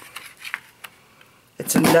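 A Curvy Corner Trio paper punch clicking twice as it cuts a scalloped corner into cardstock, with faint paper handling; quiet otherwise.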